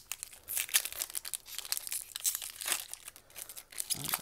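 Foil booster-pack wrapper crinkling in quick, irregular rustles as it is handled.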